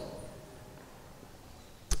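A pause in a spoken talk: quiet room tone with a faint steady hiss as the last words fade. There is one short click near the end, just before speech starts again.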